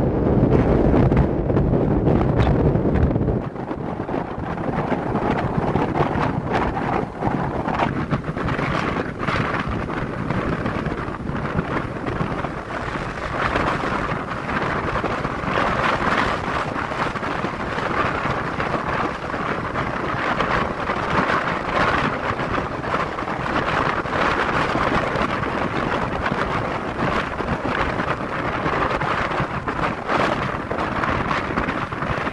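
Wind buffeting the microphone over the road noise of a moving car. The heavy low rumble drops off about three and a half seconds in, leaving a steady rushing hiss.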